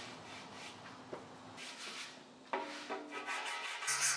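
Faint strokes of 80-grit sandpaper rubbed back and forth by hand over a body-filler spot on a painted motorcycle fuel tank. Faint background music comes in about halfway through.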